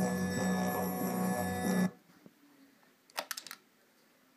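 Music playing from a Sony NWZ-A826 Walkman through its speaker dock, cutting off abruptly about halfway through as the player is taken out of the dock. Near the end, a short cluster of clicks from the player being handled.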